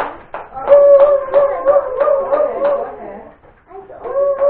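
Hands clapping in a steady rhythm, about three claps a second, under a long, wavering, high wordless vocal note; both die away about three seconds in.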